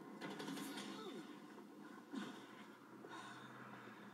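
A TV drama's soundtrack played through the set's speaker and picked up across a room: faint, indistinct voices and breaths, with a few short noisy bursts.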